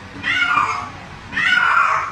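A domestic cat meowing repeatedly: two drawn-out meows about a second apart.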